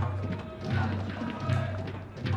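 Stadium crowd ambience carried by a steady drumbeat from supporters in the stands, about one beat every three-quarters of a second.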